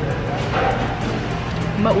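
Background music with a steady low line under faint background chatter; a word of speech comes in near the end.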